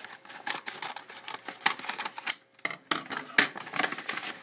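Scissors snipping through a paper mailing envelope, then the envelope's paper rustling and crackling as it is pulled open by hand, in a quick run of sharp clicks with a short lull about halfway through.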